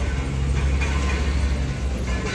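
Low, muffled rumble of an airliner and its pushback tug on the apron, heard through terminal glass. It swells from just after the start and eases near the end.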